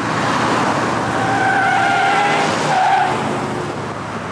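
Car tyres screeching in a skid, as under hard braking: a loud rushing noise with a steady squeal that stops about three seconds in.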